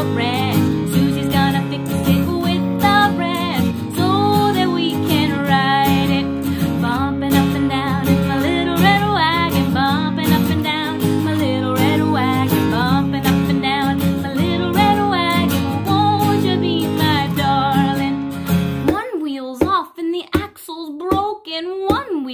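Acoustic guitar strummed in a steady rhythm with singing over it, a children's song. About 19 seconds in the strumming stops and a voice carries on alone, with a few sharp clicks.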